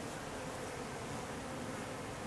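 Steady buzzing of flying insects foraging on flowering ivy, heard over a background hiss.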